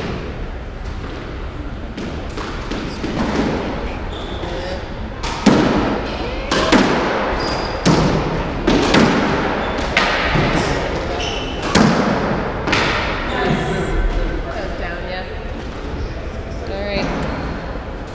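A squash rally: the ball is struck with racquets and cracks off the court walls in a string of sharp impacts about a second apart, echoing in the enclosed court, with the hits coming faster from about five seconds in.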